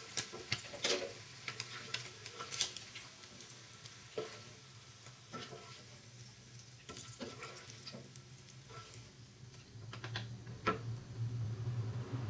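Pieces of fried tongkol fish being scooped out of hot oil in a nonstick frying pan with a wire mesh strainer and a wooden spatula: the oil sizzles faintly under scattered clicks and scrapes of the utensils against the pan. A low hum grows near the end.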